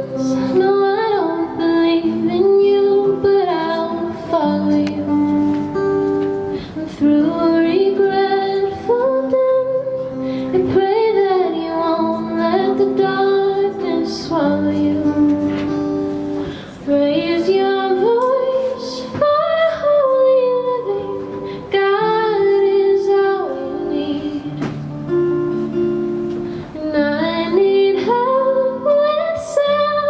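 A woman singing a slow song, holding and sliding between notes, to her own strummed acoustic guitar, with keyboard accompaniment.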